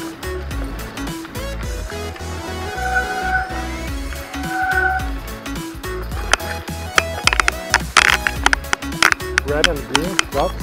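Background music with a steady beat; from about six seconds in, a mountain bike's disc brakes squeal in a series of sharp, loud shrieks, which the rider puts down to worn brake pads.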